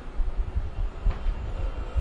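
A low, uneven rumble with a faint hiss over it, and no voice.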